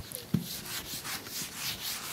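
Whiteboard eraser wiped across the board in quick repeated strokes, about four a second, with a short knock about a third of a second in.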